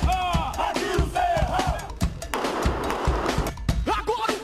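A group of special-operations police troops chanting and shouting together, a war cry or marching chant, over music with low thumping beats.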